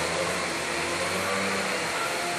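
Steady mechanical whirring hum with hiss, even throughout, with no distinct events.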